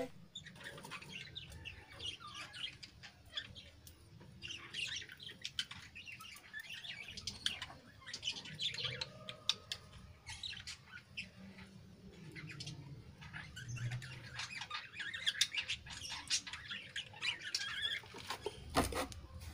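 Budgerigars chattering: a quiet run of short, quick chirps and warbles that grows busier and louder near the end.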